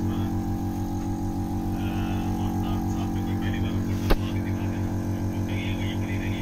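Vacuum pump of an IFT vacuum therapy unit running, a steady low hum that pulses rapidly and evenly as it draws suction on the electrodes. A single sharp click about four seconds in.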